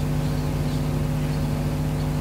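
A steady mechanical hum of a running motor, with a fast, even low pulsing under a constant drone.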